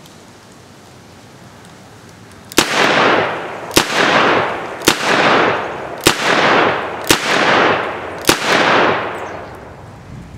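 Six shots from a four-inch Smith & Wesson Model 19 K-frame .357 Magnum revolver firing 125-grain jacketed soft-point magnum loads. They come about one a second, starting a couple of seconds in, and each trails off in a long echo.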